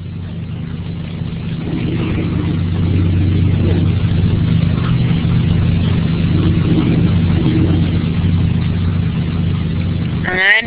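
A steady low-pitched hum in the recording's background, a little louder from about two seconds in. No other distinct sound stands out.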